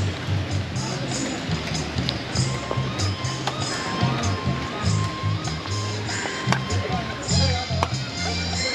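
Background music with a steady rhythmic bass line, with a few sharp knocks from a machete chopping the top off a king coconut.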